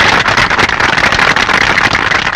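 A seated audience applauding, a dense and steady clapping.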